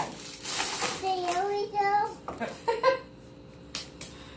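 A young child's voice making drawn-out vocal sounds. Near the start there is a rustle of a plastic bag of dry brownie mix being shaken out, and near the end one sharp clap of hands.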